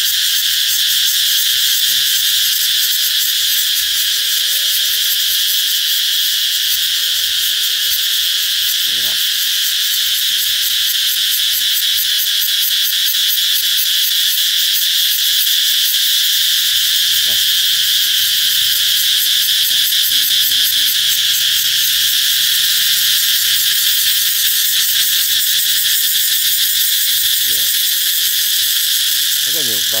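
A chorus of many cicadas singing together: a very loud, steady, high-pitched buzz.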